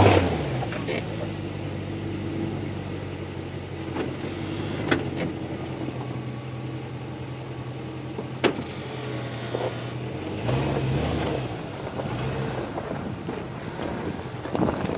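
A 2002 Jeep Grand Cherokee Overland's V8 idling steadily close by, with a brief rise in revs about ten seconds in. Two sharp clicks come through, a few seconds apart.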